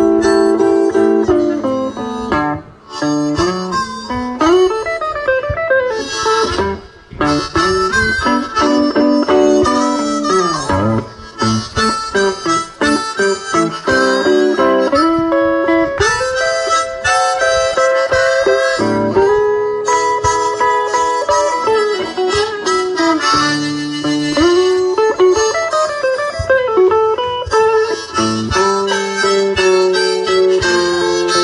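Live electric blues instrumental break: a hollow-body electric guitar being played, with a harmonica carrying long, bending lead notes over it.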